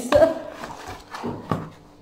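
Boxed selfie-stick tripods handled and set down among cardboard: a few light knocks, near the start and twice more about a second and a half in, with rubbing of cardboard between.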